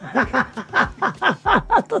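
Laughter: a quick run of short chuckles, about four a second, each dropping in pitch.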